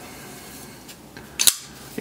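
Hinderer XM-24 folding knife flipped open: one sharp metallic snap about a second and a half in as the blade swings out and locks, after faint handling rubs.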